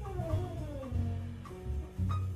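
Live jazz from a quintet of trumpet, saxophone, piano, double bass and drums: a horn slides down in pitch over about a second and a half above walking double bass notes.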